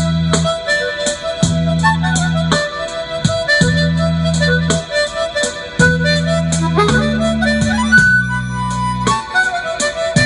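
Diatonic harmonica (blues harp) played with cupped hands in a rhythmic blues style, a melody over a steady beat of about four sharp attacks a second. A low sustained bass part comes and goes in blocks of about a second.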